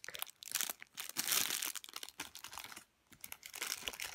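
Clear plastic bag around a squishy toy crinkling as it is handled, in irregular rustles with a brief quiet moment about three seconds in.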